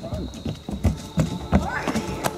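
Running footsteps on the plank deck of a wooden footbridge, about three hollow-sounding thuds a second, getting louder as the runner comes close.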